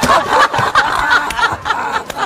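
Men laughing hard and loudly, a continuous stretch of uncontrolled laughter.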